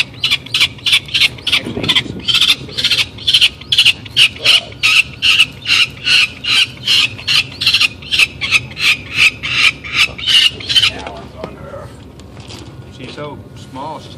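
Downy peregrine falcon chick calling while being held in the hand: short, high-pitched calls in a rapid series of about three a second, stopping about eleven seconds in.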